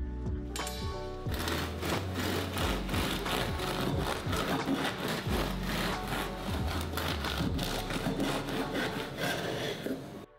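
Serrated bread knife sawing back and forth through the crisp crust of a freshly baked white bloomer loaf on a wooden board. The cutting starts about a second in, continues as a steady run of quick strokes, and stops at the end, over background music.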